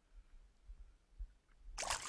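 Faint low bumps, then about three-quarters of the way in a sudden burst of splashing as a hooked striped bass thrashes at the water's surface while it is landed by hand.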